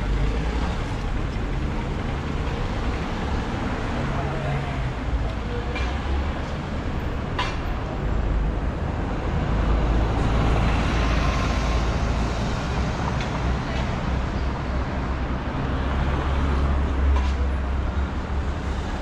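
Busy city street traffic: a steady low rumble of cars and motorcycles that swells as vehicles pass, with pedestrians' voices in the background and a single sharp click about seven seconds in.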